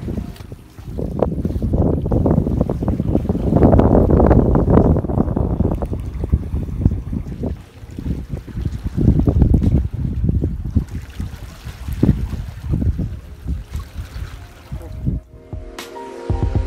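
Wind buffeting a phone's microphone in loud, uneven gusts, a deep rumbling that swells and falls and dies away just before the end.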